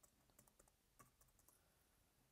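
Faint keystrokes on a computer keyboard as a number is typed in: a handful of light, irregularly spaced clicks.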